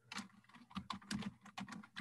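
Computer keyboard being typed on: a quick, uneven run of key clicks.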